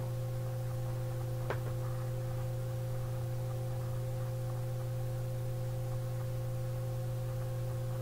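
Steady low electrical hum of a microphone recording setup, with a fainter steady higher tone above it. A single mouse click sounds about one and a half seconds in.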